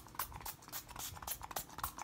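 Pump-spray bottle of Tatcha Luminous Dewy Skin Mist (travel size) spritzed at the face in a rapid run of short hissing sprays, several a second. The bottle is running low.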